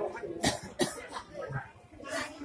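A person coughing twice in quick succession, about half a second in, with voices faintly in the background.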